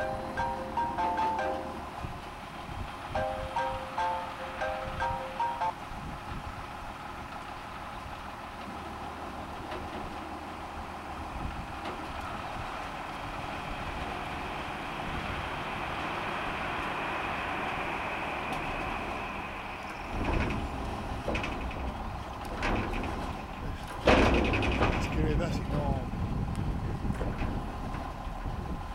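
Grain hopper trailer tipping its load sideways into a truck: grain pours out of the raised hopper with a hiss that swells and then fades through the middle, over the steady running of the tractor's engine. Loud irregular knocks and bangs come near the end.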